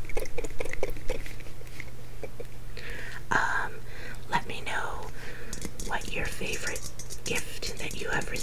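Fingertips and nails tapping quickly on a glass snow globe, in a flurry of light clicks at the start and again through the last couple of seconds. Soft whispering comes in between.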